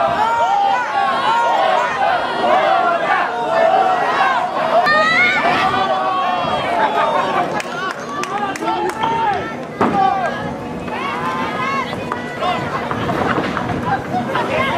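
Ringside crowd at a lucha libre show: many spectators shouting and calling out over each other without a break. A single sharp thump comes about ten seconds in.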